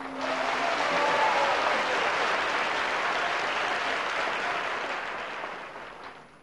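Studio audience applauding, beginning as the last sung note ends and fading away near the end.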